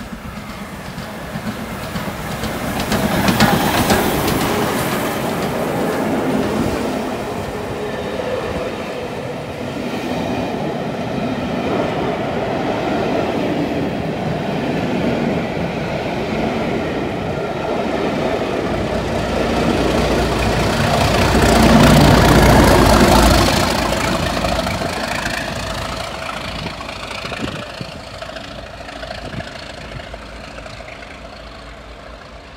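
LMS Black Five steam locomotive running through with its train of coaches: loudest as the engine passes about three seconds in, then the steady clatter of coach wheels on the rails. A second loud swell with a deep rumble comes about twenty-two seconds in, then the sound fades.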